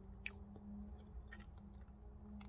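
Faint mouth sounds of chewing a soft chocolate sandwich cake, with a few light clicks.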